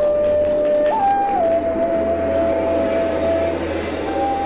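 Cantonese opera accompaniment ensemble playing an instrumental passage between sung lines: a lead melody steps up about a second in, then holds one long steady note over softer accompanying instruments.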